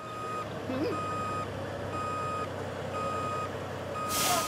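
A truck's reversing alarm beeping steadily, about one half-second beep each second, over the low rumble of its engine as it backs up.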